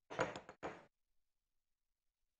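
Two brief knocks and scrapes of a wooden spoon against a small glass jar as an ingredient is scooped out, both within the first second.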